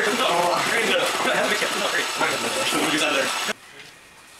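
Loud mechanical rattling noise with voices talking over it, which cuts off abruptly about three and a half seconds in.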